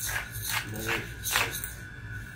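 Hand pepper mill grinding peppercorns as it is twisted: four short gritty crunches, about one every half second.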